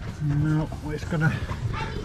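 A man's voice making short vocal sounds with no clear words.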